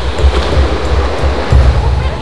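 Small waves washing up onto a sandy beach, with gusty wind rumbling on the microphone, under background music.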